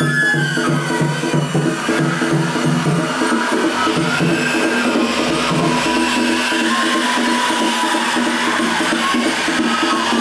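Japanese festival hayashi music with drums, a held melody over a steady repeating beat, accompanying a hikiyama float as it is pulled.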